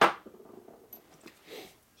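A single sharp metal clink at the start as steel transmission gears and parts are handled on a metal workbench, then faint handling noises.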